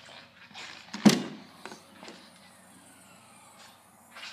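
The SUV's rear liftgate latch releasing with a single sharp thump about a second in, followed by a faint high hiss as the hatch lifts.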